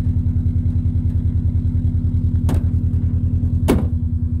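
2006 Subaru Impreza WRX STI's flat-four engine idling with a steady, even pulsing note. Two brief knocks cut in, one about two and a half seconds in and one near the end.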